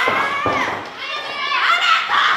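Women pro wrestlers yelling in high, strained voices, the pitch sliding up and down from shout to shout, with a short thud about half a second in.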